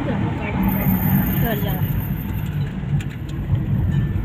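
Road and engine noise inside a moving car's cabin: a steady low rumble, with faint voices under it.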